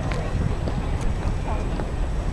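Wind buffeting the microphone as a steady low rumble, with faint voices of people talking and a few light clicks.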